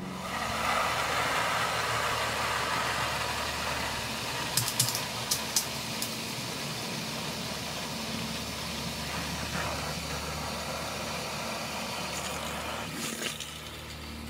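Water running steadily from a garden hose at an outdoor tap, with a few sharp clicks about five seconds in; the flow stops near the end.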